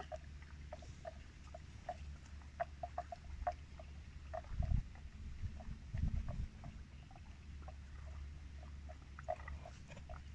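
Short, high animal chirps repeating irregularly, a few a second, over a low steady rumble. Two louder low rumbles come in the middle.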